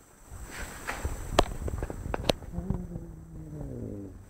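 A few sharp, separate taps or clicks, then a person's voice held on one long, slightly falling sound through the last second and a half.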